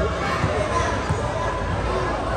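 A basketball being dribbled on the court, a few low thumps, over the steady chatter and calls of players and spectators.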